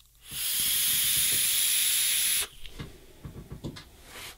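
A vape coil in a rebuildable dripper on an iJoy Capo 216 squonk mod firing in power mode at 75 watts: a steady hissing sizzle of the coil and the drawn air for about two seconds, stopping suddenly. Faint creaks of a chair follow.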